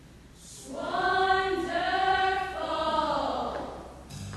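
Choir singing a short unaccompanied phrase: after a brief hush the voices come in about half a second in, hold a smooth, close-harmony line for about three seconds, and fade just before the end.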